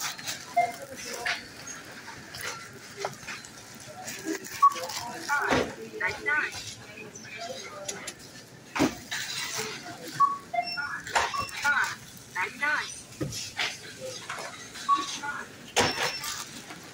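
Indistinct voices talking nearby, mixed with scattered clicks and knocks of items being handled and a wire shopping cart rattling.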